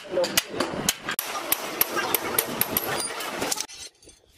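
Irregular sharp metallic knocks and clinks of tools on steel, several a second, over people talking, cutting off abruptly just before the end.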